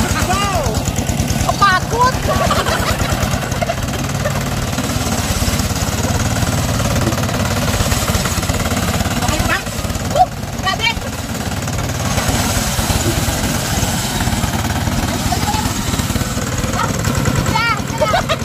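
Single-cylinder diesel engine of a walk-behind hand tractor running steadily with a fast, even chugging beat as it drags a disc plough through paddy mud. Brief voices call out over it near the start, around the middle and near the end.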